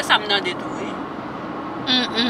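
Steady road and engine noise inside a moving car's cabin, following a few words of speech at the start.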